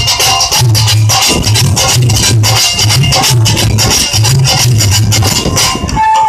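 Live folk instrumental ensemble playing loudly: dhol drumming with a repeating low beat and dense, rapid rattling percussion over it.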